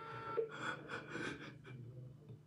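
A man's stifled laughter: a quick, uneven run of short breathy gasps, fading out near the end.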